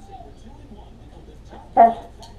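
A dog gives one short, loud bark near the end, over quiet room background.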